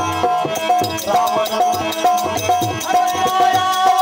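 Live devotional folk music: a harmonium holding a steady melody line over a regular dholak beat and quick hand percussion, with no break.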